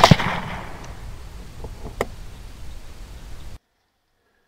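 Shot from a suppressed 6.5 Grendel AR-type rifle (SilencerCo Omega suppressor) at the very start, its report dying away as an echo over about a second. A single sharp click comes about two seconds in, then the sound cuts out.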